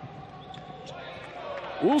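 Indoor futsal arena ambience: low crowd noise with a few faint ball thuds on the court.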